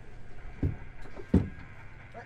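Two short, dull thumps about two-thirds of a second apart, the second louder, over a low steady rumble.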